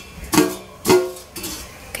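Two sharp metallic clinks about half a second apart, each ringing briefly: metal tongs striking the wire basket of a Kyowa air fryer as squid balls are placed in it.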